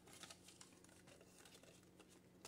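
Near silence with faint, soft rustles of paper banknotes being handled and tucked into a clear plastic binder pouch.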